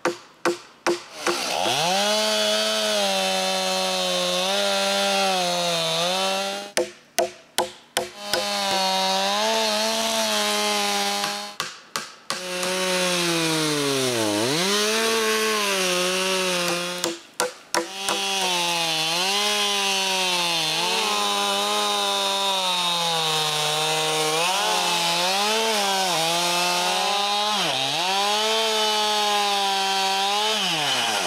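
Two-stroke chainsaw running near full throttle while ripping a log lengthwise along a guide in a homemade chainsaw-mill jig, squaring it into a 6x6 beam. Its pitch sags and recovers as the chain loads up in the cut, with a few deep dips. The sound cuts off briefly four times.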